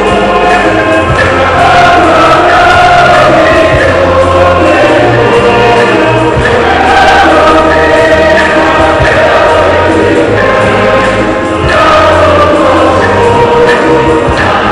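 Church choir singing loudly and continuously, with low bass notes held under the voices.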